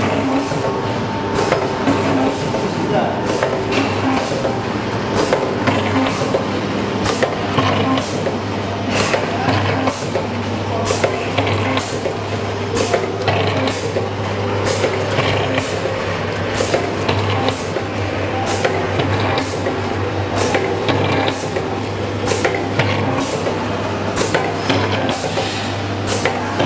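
Vertical liquid sachet packing machines running, their sealing and cutting jaws clacking about one to two times a second over a steady machine hum.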